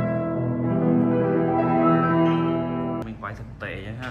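Eterna upright piano played with sustained chords, cutting off abruptly about three seconds in.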